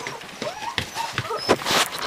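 Six-week-old Bernese mountain dog puppies giving short yips and whimpers as they play, mixed with scuffling and a sharp knock near the middle.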